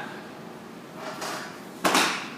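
Rustling of martial arts uniforms, then a single sharp slap near the end with a short room echo, as hands slap against the uniforms when coming to attention.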